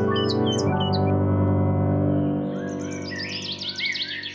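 Soft, sustained music fading out over the first few seconds, with birds chirping over it: a few short chirps at first, then a quick run of repeated chirps toward the end.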